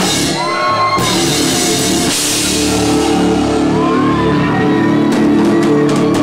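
Rock band playing live: drum kit and electric guitars in a steady, loud wall of sound, with a shouted vocal over it and crashing drum and cymbal hits near the end.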